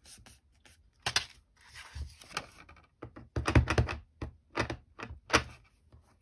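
Cardstock and a wooden-mounted rubber stamp being handled on a cutting mat as a card base is turned over and set down: a string of light knocks and taps, a few scattered at first and then several in quick succession in the second half.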